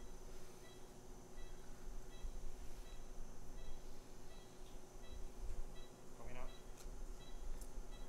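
Operating-room patient monitor beeping its pulse tone in time with the patient's heartbeat, about three short beeps every two seconds, over a steady equipment hum. A couple of faint clicks near the end.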